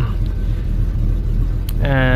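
Jeep Cherokee's 4.6-litre stroker inline-six idling steadily, heard from inside the cab.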